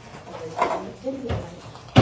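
Voices in a classroom: young children and a woman talking indistinctly, with a single sharp knock near the end.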